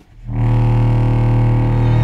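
Chamber ensemble of string quintet, contrabass clarinet and baritone saxophone coming in together about a third of a second in, after a near-silent pause. They hold a loud, sustained low chord.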